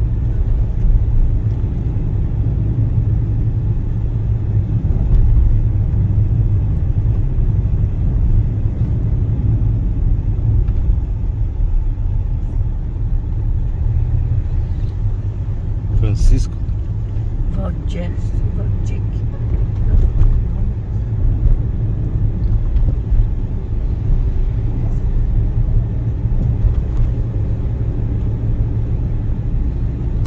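Car driving at low town speed, heard from inside the cabin: a steady low rumble of engine and tyre noise, with a few brief clicks or knocks about halfway through.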